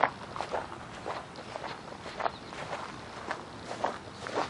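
Footsteps on dry, dead grass, about two steps a second.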